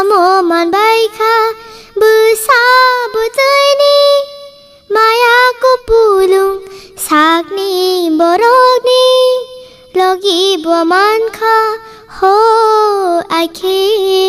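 A child singing a Kokborok song solo, in short melodic phrases with brief pauses between them.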